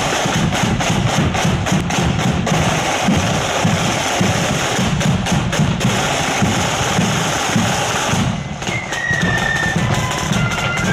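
A marching flute band's drum corps, side drums and bass drum, playing a marching beat of quick sharp strokes. Near the end the drums drop briefly and the flutes strike up a tune.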